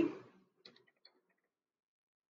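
A quick run of faint computer keyboard keystrokes, several short clicks within about the first second and a half, as a word is typed.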